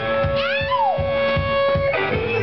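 Live guitar music: one long high note held almost the whole time while other notes bend up and down over it, with a steady kick drum beat underneath.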